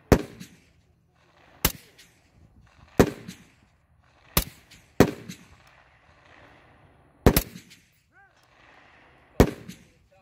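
Seven rifle shots from a scoped precision rifle fired prone, irregularly spaced one to two seconds apart, with two of them in quick succession in the middle. Each report is followed by an echo that trails off.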